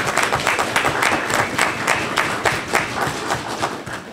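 Small group of people applauding, a dense patter of hand claps that fades out near the end.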